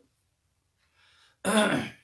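A man clears his throat once, a short voiced sound of about half a second, near the end of a pause in his talk.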